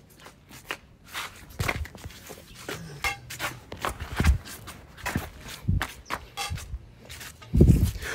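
Sandalled footsteps shuffling on a stone-tiled floor, with scattered taps and knocks from walking sticks on the tile. A louder thump comes near the end.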